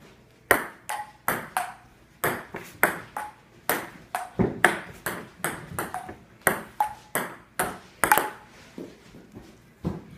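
Table-tennis rally: the ball clicks off the paddles and the table about three times a second, with a short ringing tone on some bounces. The hits thin out near the end.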